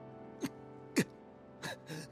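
Quiet anime score with sustained held tones under two short, breathy gasps about half a second and a second in, then a brief voice near the end.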